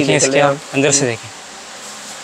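A man's voice speaking for about the first second, then quieter steady background noise.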